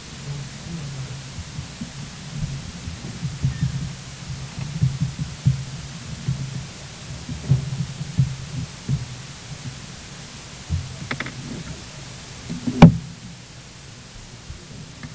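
Irregular low bumps and rumble from people moving around a meeting room, picked up by the desk microphones. A few clicks come about 11 seconds in, and one sharp knock near the end is the loudest sound.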